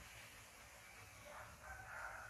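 A faint, drawn-out animal call starting about halfway through, over near silence.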